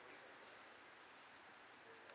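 Near silence: faint room tone in a pause between lines of speech.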